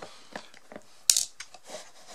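Small clicks and rubbing of an electric pencil sharpener's plastic gearbox housing being handled, with one sharp click about a second in.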